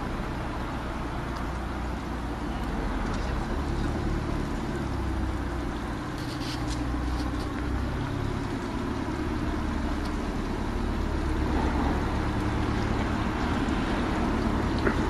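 A small cabin cruiser's engine running slowly, a steady low hum that grows a little louder as the boat comes closer.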